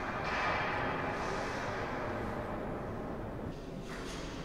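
Steady ambient noise of a large reverberant stone hall, with no distinct event; it swells slightly just after the start and eases near the end.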